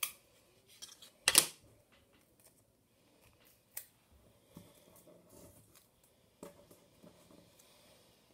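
Clear sticky tape being pulled from a dispenser and torn off: a sharp snap at the start, a louder short rip about a second and a half in, and a click near four seconds. Between them, paper rustles softly on a wooden tabletop.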